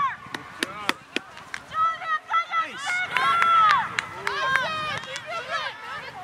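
Field hockey sticks clacking against each other and striking the ball in a series of sharp knocks. High voices shout and call over them, loudest in one long drawn-out call about three seconds in.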